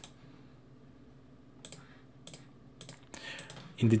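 Several short, sharp computer mouse clicks, placing the corner points of a shape being drawn on a map, spread over the middle and latter part, with faint room hiss between them.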